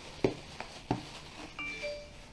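Three light clicks of hard plastic gashapon capsules knocking together as they are handled in a plastic bag, then a short chime of a few rising notes near the end.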